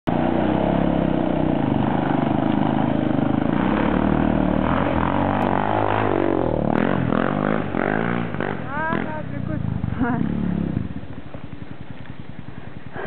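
ATV (quad) engine running hard on a steep uphill climb, its pitch swinging up and down as it passes close, then dropping to a low, even putter about eleven seconds in. Laughter and an "ooh" near the end.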